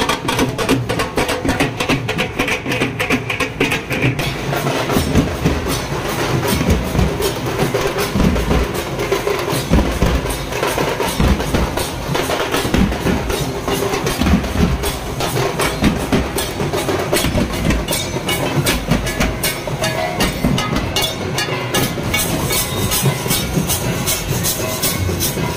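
Several dhak drums beaten with sticks in a fast, dense, continuous rhythm, the strokes growing sharper and more even near the end.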